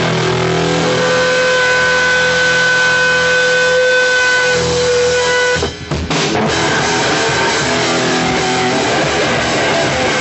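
Hardcore band playing live at high volume, heard through the club's room sound. Distorted electric guitars hold a ringing chord, cut off briefly about six seconds in, then the full band with drums comes in.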